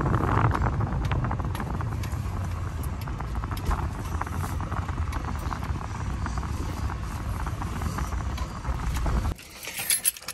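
Pontiac GTO V8 running at low speed as the car creeps along, a steady low rumble with light ticking, until the engine stops abruptly about nine seconds in.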